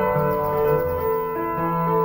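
Solo piano improvisation, held notes and chords ringing on and changing, with a new bass note coming in near the end.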